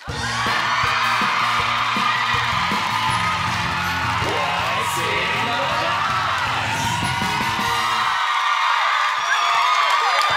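Upbeat segment theme music with a studio audience cheering, whooping and screaming over it. The music's low end cuts off about eight seconds in while the cheering goes on.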